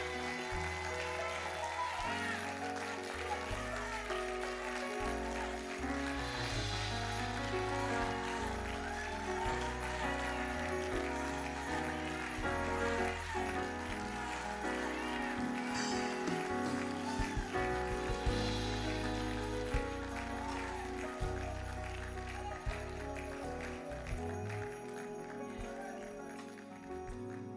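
Church praise music with held chords over a shifting bass line. Over it the congregation's voices call out, and there is hand-clapping, with louder swells about six seconds in and again around sixteen to nineteen seconds.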